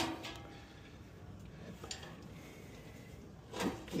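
A few faint, scattered clicks and scrapes of a hand tool working at the hub of a furnace blower wheel, over a quiet background.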